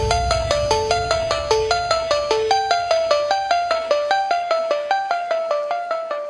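A bright, marimba-like ringtone melody of quick repeating notes, about four or five a second, growing fainter toward the end.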